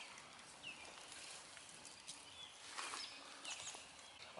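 Quiet outdoor ambience with a few faint, short bird chirps.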